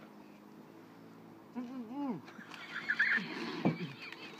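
Garbled, muffled vocal sounds from a man with his mouth stuffed with marshmallows: quiet at first, then a short run of sounds rising and falling in pitch about halfway through, followed by higher, broken sounds and a click near the end.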